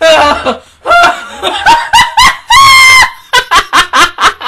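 A woman laughing hard in repeated bursts, with one long high-pitched held squeal about two and a half seconds in.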